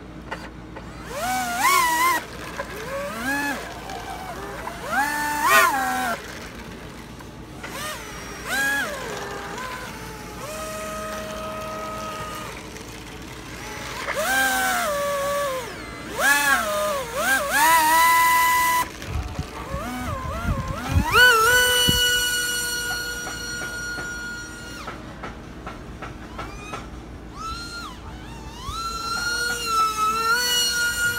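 Electric motor and propeller of a foam RC flat jet whining in short bursts, its pitch rising and falling with each throttle blip as the plane is driven forward and backward on the ground with a reversing ESC. About two-thirds of the way through it settles into a longer, steadier high whine under high throttle.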